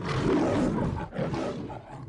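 A lion's roar sound effect in a logo sting: two rough pushes with a short break about a second in, fading out at the end.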